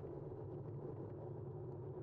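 Steady low rumble of a bicycle rolling along a paved path: tyre and wind noise picked up by the bike-mounted camera's microphone.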